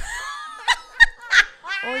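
A woman laughing: a high, sliding laugh followed by three short, sharp bursts of laughter.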